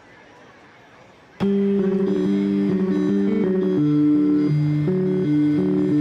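Faint hiss, then an acoustic guitar starts abruptly about a second and a half in, playing the picked instrumental intro of a song.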